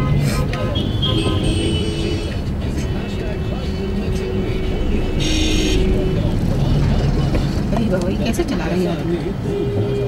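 Low, steady rumble of a Maruti Swift's engine and the surrounding traffic, heard from inside the cabin, under music and talk from the car radio. A brief high-pitched sound about five seconds in.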